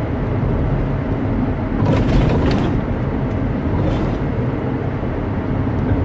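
Car driving, heard from inside the cabin: steady low road and engine rumble, with a brief louder rush of noise about two seconds in.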